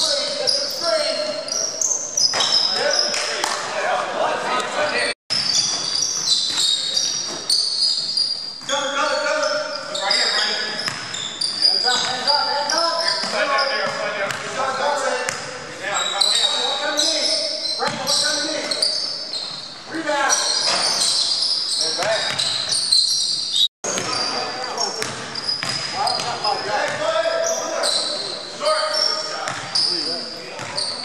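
Live basketball game on a hardwood gym floor, echoing in the hall: a basketball bouncing, sneakers squeaking in short high chirps, and players calling out. The sound cuts out for an instant twice.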